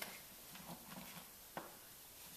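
Very quiet studio room tone with faint small movement sounds and one soft click about one and a half seconds in; no piano is played.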